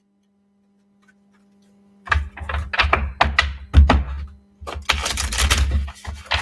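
A tarot deck being handled and shuffled by hand: after a moment of quiet, a run of quick card clicks and taps with dull thumps, then a denser, continuous rush of shuffling near the end.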